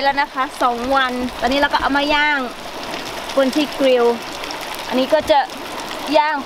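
A voice talking in short phrases over a steady hiss, with a quieter stretch of hiss alone about halfway through.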